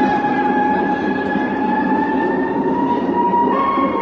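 A single long held note with overtones, rising slowly in pitch, over a steady rushing hiss.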